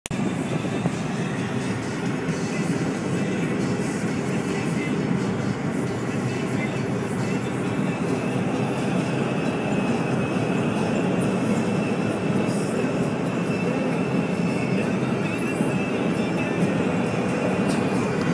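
Steady road and engine noise heard from inside a car's cabin while driving at speed.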